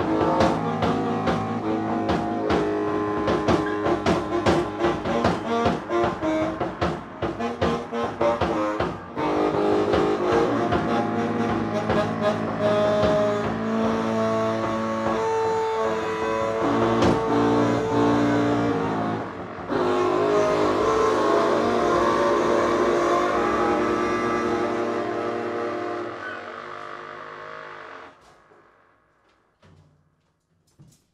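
Free-improvised jazz: a bass saxophone and another saxophone hold long overlapping notes over quick percussion strikes, the strikes thickest in the first several seconds. The playing thins out and dies away to near silence a couple of seconds before the end.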